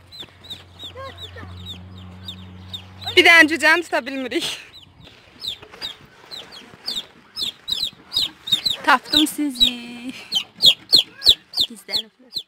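Chicks peeping continuously, short high cheeps that fall in pitch, several a second. Louder, longer calls come about three seconds in and again around nine seconds.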